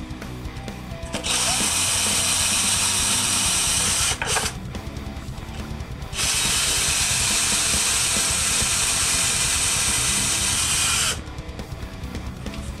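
Cordless drill running in two steady bursts, one about three seconds and one about five seconds long, its thin bit drilling into a carved wooden guitar body, over background music.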